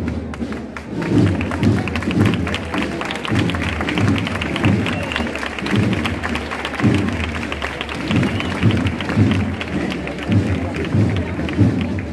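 Wind band playing a processional march over a steady bass drum beat, while the crowd applauds from about a second in until near the end.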